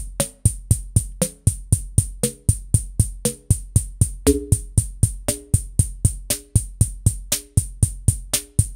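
Reason 5's Kong drum designer plays a looping electronic motorik drum-machine beat sequenced from Redrum: steady ticking hi-hats about five times a second over a bass drum. A synthesized snare comes about once a second, and its ringing tone changes from hit to hit as its pitch, harmonic and noise settings are turned.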